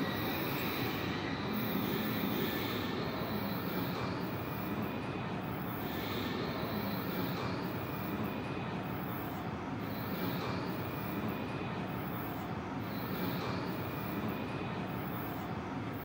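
Steady ambient rumble and hum of an underground railway station platform, even in level throughout, with no train arriving or departing.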